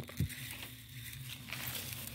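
Faint rustling and crackling of a lettuce plant being pulled up by its roots out of dry soil, over a low steady hum.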